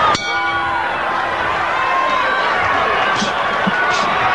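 Boxing ring bell struck once to open the round, ringing on for about a second and a half over steady arena crowd noise.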